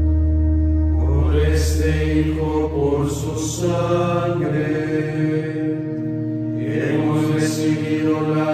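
Men's voices chanting a psalm or canticle of the Liturgy of the Hours in unison, over sustained accompanying chords. A deep bass note is held through the first half. The voices come in about a second in, break off briefly near the six-second mark, and resume.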